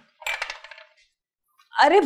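A brief metallic jingling clink that rings and fades within about a second. A person laughs near the end.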